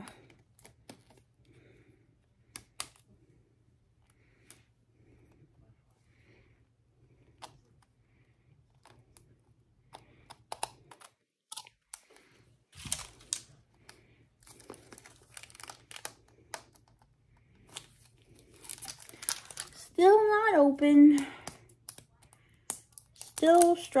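Thin plastic wrapping on a toy surprise ball being picked at and peeled with a small metal opener: scattered clicks and crinkles, sparse at first and much busier from about ten seconds in. The wrap is tight and hard to get off.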